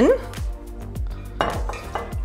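Background music with a steady beat, and a brief metallic clink about one and a half seconds in as a stainless-steel measuring cup knocks against a glass pitcher while it is tipped in.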